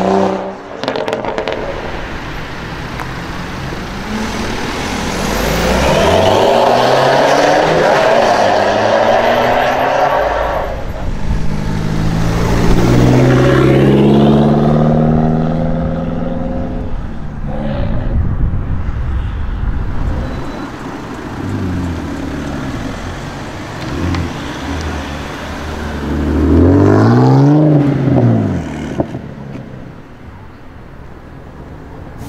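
Several BMW E92 coupes pulling away one after another, their engines revving and exhaust notes rising in pitch as they accelerate. There are a handful of separate loud runs, the strongest in the middle and one last rev near the end.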